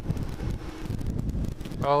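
Wind buffeting the microphone over the low, steady rumble of a Kawasaki GTR1400 motorcycle ridden slowly. A man's voice starts near the end.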